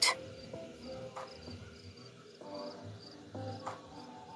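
Soft background music with held notes, over a steady high-pitched chirping that repeats about three times a second.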